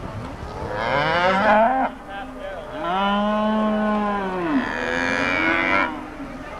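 Texas Longhorn cattle mooing: three long moos back to back. The first rises in pitch, the middle one holds steady and then falls off at its end, and the third cuts off near the end.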